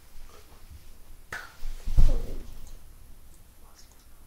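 A loud, low thump about two seconds in, close to the microphone, as an arm brushes past on the carpet. A sharper click comes just before it, and a few light clicks follow as small toy monster trucks are picked up and handled.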